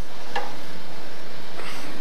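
A light click and, near the end, a short faint scrape: the tool rest of a Jet lathe being slid back along its metal bed.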